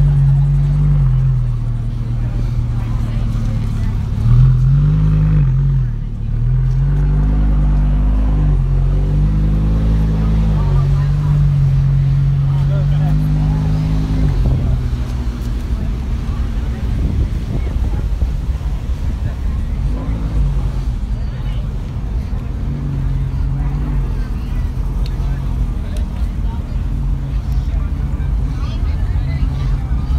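Sports car engines running at low revs as the cars roll slowly past, the pitch rising and falling with several throttle blips in the first half and steadier later. Crowd chatter is underneath.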